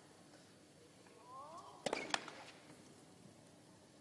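Hushed tennis-arena crowd between points. A faint voice from the stands is heard about a second in, then two sharp knocks close together just before the middle.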